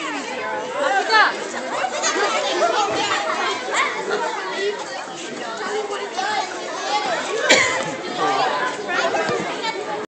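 Many people, children among them, chattering at once, with many voices overlapping. There is a single sharp knock about seven and a half seconds in.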